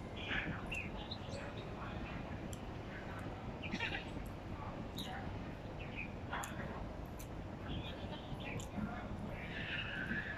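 A person chewing a mouthful of rice close to the microphone, with small wet mouth clicks and smacks, over a steady outdoor background with a few faint bird chirps. Near the end a plastic spoon scrapes in the plastic food container.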